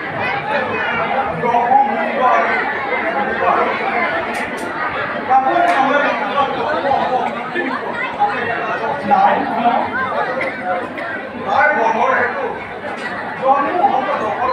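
Several voices talking over one another, without a break.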